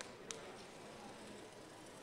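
Near silence: faint room tone with two small clicks shortly after the start.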